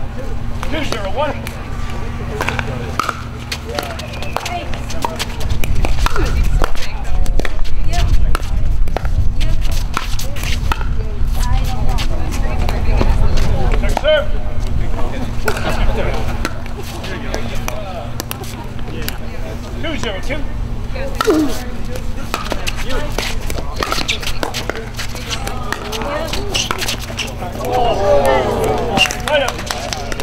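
Pickleball paddles striking a plastic ball in rallies on this and neighbouring courts: sharp pops at irregular intervals, over a steady low rumble and hum.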